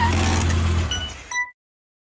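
Logo sound effect: a car engine with skidding tires that fades out about a second in, followed by a couple of short bright pings, then silence.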